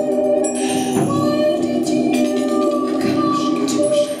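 Live song: a woman singing over steady, sustained electronic chords, with a rising sweep about half a second in.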